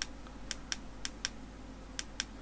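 Small plastic push buttons on a ring light's inline cable remote being pressed: about six short, sharp clicks at an uneven pace, a few of them only a quarter second apart.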